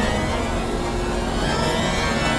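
Experimental electronic music: steady, dense synthesizer drones with several held tones over a noisy, rumbling texture.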